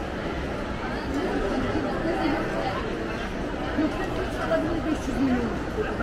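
Crowd chatter: many voices talking at once, a steady babble in a busy shopping-mall food court.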